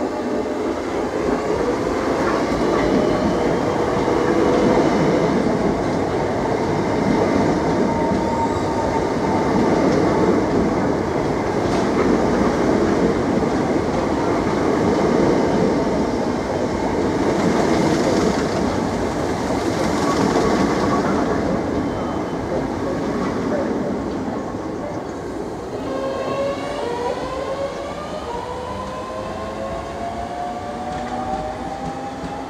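Southeastern electric multiple-unit trains running on the tracks by the platform: a steady rumble of wheels on rail, loudest through the middle. Near the end, the whine of a train's traction motors climbs in pitch as it gathers speed.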